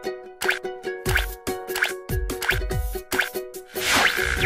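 Bouncy plucked-string jingle music with a cartoon-style plop effect, falling in pitch, landing about every two-thirds of a second, and a loud rising whoosh near the end.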